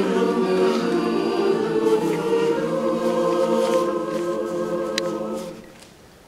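Mixed choir singing sustained chords in harmony, the sound dying away about five and a half seconds in. A single sharp click shortly before the fade.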